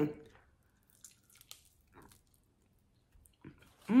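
A woman chewing a mouthful of honey barbecue chicken wing: a short hummed "mm" at the start, then faint, scattered chewing sounds.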